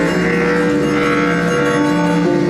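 Free-improvised acoustic ensemble music: several long held pitched notes overlap in a dense, steady texture, with a new note entering just after the start.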